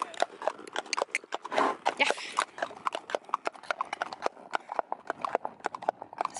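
Horse hooves clip-clopping on a path: a quick, uneven patter of hoof strikes, with a short breathy rush of noise about two seconds in.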